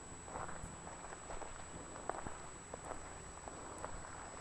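Faint, irregular footsteps on dry dirt and dead grass, a few soft steps.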